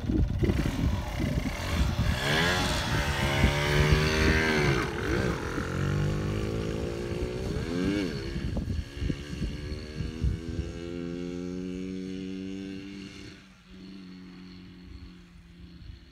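Yamaha TDR 125's two-stroke single-cylinder engine revving up and down several times as the motorcycle rides along a dirt track. It then settles into a steadier run that drops in pitch and fades near the end as the bike moves away.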